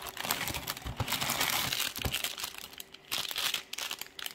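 Plastic crinkling and rustling as a hand rummages down inside a cereal box, between the plastic liner bag and the cardboard, to pull out a toy in a plastic packet. The crinkling is dense for the first two seconds, eases off, and comes back briefly near the end.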